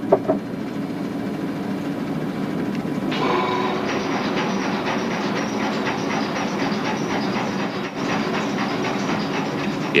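Laboratory shaker running with a steady hum, as it shakes flasks of bacterial culture. About three seconds in it turns into a busier, brighter rattle with a fast, even clatter.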